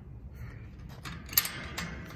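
A few sharp metal clicks, the first and loudest a little over halfway through, as a combination padlock is handled on a metal gate latch.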